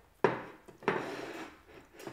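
Tableware handled while dinner is served: a sharp clatter of a plate or dish about a quarter second in, then a longer scraping clatter about a second in.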